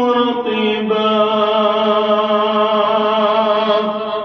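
A man's voice chanting in a drawn-out melodic recitation: a short phrase, then from about a second in one long held note at a steady, slightly lower pitch, which begins to fade at the end.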